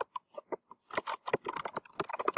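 Typing on a computer keyboard: an irregular run of key clicks that comes faster in the second half.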